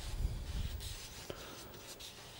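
Wide flat watercolour brush swept back and forth across Arches watercolour paper, its bristles brushing and scratching softly in a few strokes as a blue graded wash is laid on.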